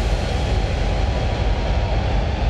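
Closing wash of an electronic dubstep DJ set: the beat has stopped, leaving a dense rumbling noise with a thin steady tone, its treble slowly dulling.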